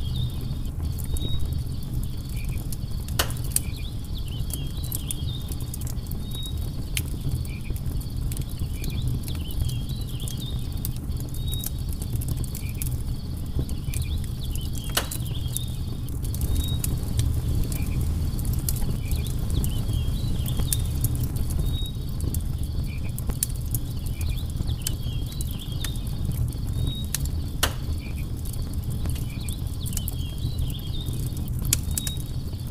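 Wood campfire crackling: a steady low rumble of burning logs with frequent sharp pops and snaps, three louder pops about 3, 15 and 28 seconds in. Faint, high insect chirps recur in the background.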